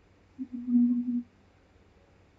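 A person's brief hummed "mmm", a steady single pitch held for under a second starting about half a second in, like a hesitation filler; the rest is quiet.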